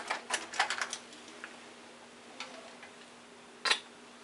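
Small objects being handled at a bathroom sink: a quick run of sharp clicks and taps in the first second, a few faint ticks after, and one louder click near the end, over a faint steady hum.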